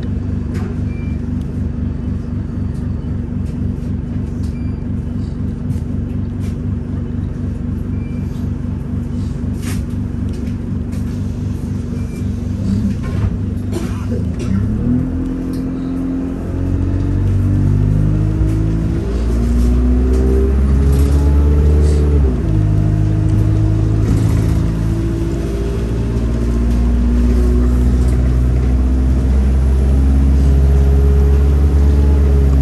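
Single-deck bus engine heard from inside the passenger saloon, idling steadily for about fifteen seconds. Then the bus pulls away and the engine note climbs in steps and grows louder, dropping in pitch at a gear change a few seconds later before climbing again.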